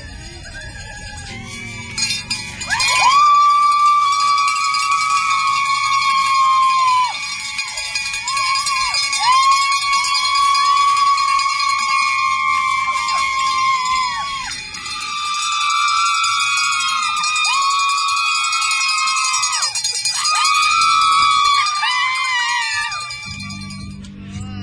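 Volunteers cheering riders off with long, high-pitched whoops, several overlapping, each held for a few seconds and sliding up at the start and down at the end.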